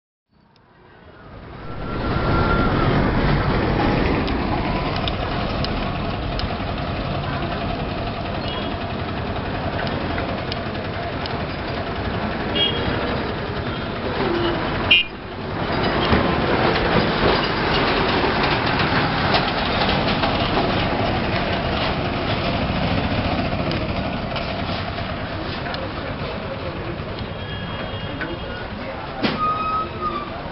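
Street traffic: a steady mix of auto-rickshaw, motorbike and truck engines and tyre noise, with short horn toots now and then.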